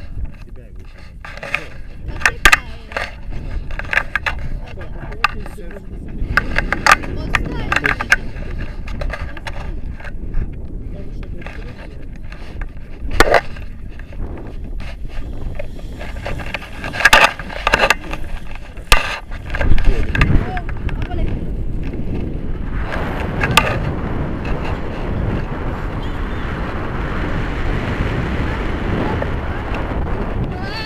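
Handling knocks and clicks on a pole-mounted action camera and paragliding harness gear, with wind rumbling on the camera's microphone that grows into a steady rush over the last several seconds.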